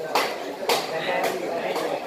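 Voices of diners talking in a busy eatery, with two sharp clicks of tableware in the first second.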